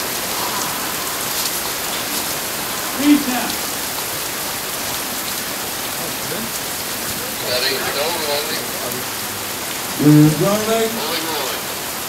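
Heavy rain falling steadily onto a gravel rooftop, an even wash of noise throughout, with a few short voices breaking through near the end.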